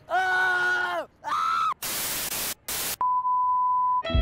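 Three drawn-out vocal cries, each sagging in pitch as it ends, then two short bursts of hiss like static, then a steady high flatline beep for the last second, the kind that signals a death.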